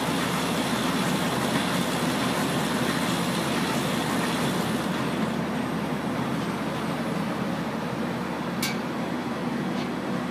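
Heidelberg QM-DI offset press running under power with no job on it, a steady mechanical hum and whir. Two sharp clicks near the end come from its delivery cover being handled.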